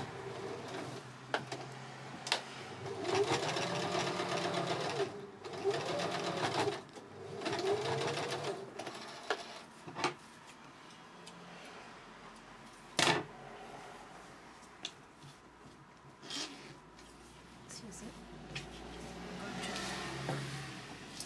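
Household electric sewing machine stitching in three short runs, the motor speeding up and slowing down in each, with scattered clicks around them. A single sharp knock comes about two-thirds through, followed by quieter handling of the fabric.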